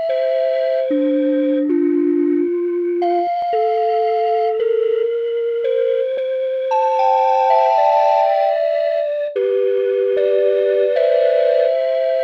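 Flute voice of the Fingertip Maestro iPhone/iPad music app, played by tapping: a slow melody of held notes stepping up and down. In the second half several notes overlap into a falling cascade and then two-note chords.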